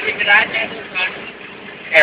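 People's voices talking inside a moving van, in short bursts, over the steady noise of the van's engine and tyres on the road.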